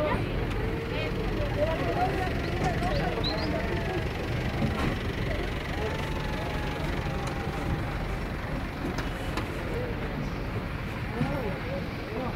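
Indistinct voices of people talking over a steady low rumble, with no distinct event standing out.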